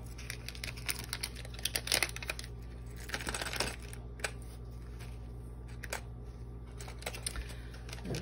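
Small metal charms clicking together and a small plastic bag crinkling as they are handled and put away: a flurry of light clicks and rustles in the first half, then only scattered ticks over a steady low hum.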